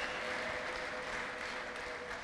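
A large congregation applauding, the clapping slowly easing off, with a faint steady tone underneath.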